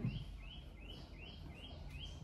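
A small bird chirping faintly and repeatedly, short high notes at about four a second, over a low background hum.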